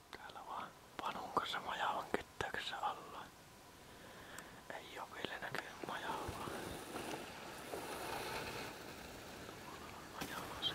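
Hushed whispered talk, breathy and broken into short phrases, with a few sharp clicks in the first three seconds.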